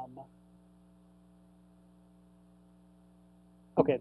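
Faint, steady electrical mains hum made of several steady tones at once, with nothing else over it until a man's voice comes back near the end.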